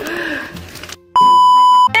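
A single loud, steady electronic bleep lasting under a second, starting and stopping abruptly about a second in, of the kind edited over speech as a censor bleep.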